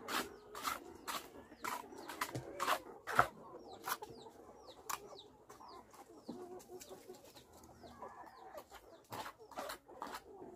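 Chickens clucking, with a run of short high chirps that fall in pitch, and short sharp clicks or scrapes about once or twice a second.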